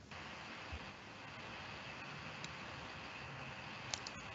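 Faint steady hiss of an open microphone on a video call, switching on abruptly just after the start, with a few faint clicks.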